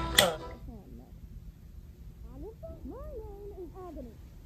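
Ice rattling in a metal cocktail shaker, cut off suddenly just after the start. Then faint, high-pitched, voice-like sounds whose pitch glides up and down, mostly in the second half.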